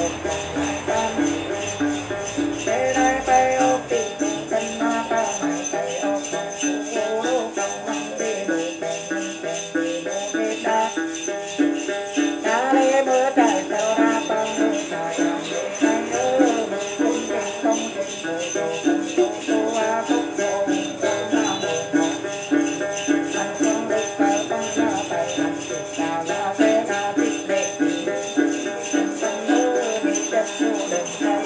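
A Then ritual song accompanied by the đàn tính gourd lute, with a cluster of small jingle bells shaken on a steady beat throughout. A wavering melody, sung or plucked, rises and falls over the bells.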